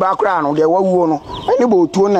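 A man speaking, only speech, with long drawn-out syllables.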